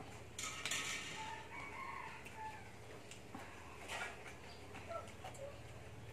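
A rooster crowing once, faint, about a second in, its call held for roughly a second and a half.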